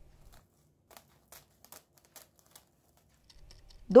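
A few faint, scattered crinkles of plastic cling film being pressed down over a glass bowl of dough, with a woman's voice starting right at the end.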